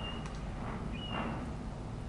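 A bird calling: two short, high whistled notes about a second apart, over a steady low outdoor rumble.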